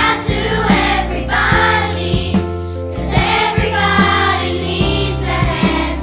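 Children's choir singing a song over a backing track with a steady beat and bass.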